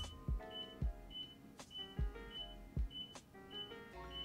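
A computer sounding a string of short, identical high beeps from the Linux 'beep' command, set to 3000 Hz, 100 ms long and 500 ms apart, repeating ten times. The beeps fall evenly a little over half a second apart, over faint background music.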